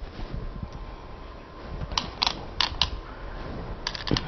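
A few light, sharp clicks: two about two seconds in, two more shortly after, and a quick pair near the end, over low steady background noise.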